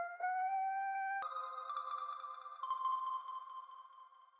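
Single synth notes from an Arturia Analog Lab V preset, sounded one after another as notes are clicked into a piano roll. Each note is held for a second or so, and the first slides slightly upward in pitch.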